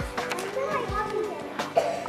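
A group of young children chattering and laughing, with soft background music and a steady beat underneath.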